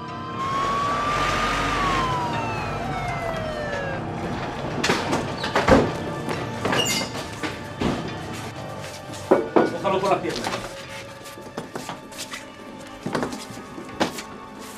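An ambulance siren makes one wail that rises and then falls away over the first few seconds. It is followed by a run of sharp knocks and thuds, doors and equipment being handled, over film score.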